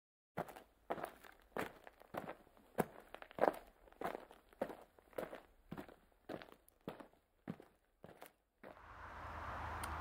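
Footsteps at a steady walking pace, a little under two steps a second, each a short sharp strike. Near the end they stop and a steady rushing outdoor noise with a low rumble begins.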